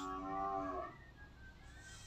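A short sound of several steady tones held together, lasting under a second, then fading to a faint background.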